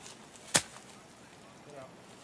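A golf club striking the ball off the grass: one sharp click about half a second in.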